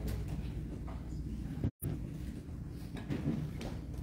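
Room tone with a steady low hum and a few faint knocks, cut off completely for a moment by a brief audio dropout a little under halfway through.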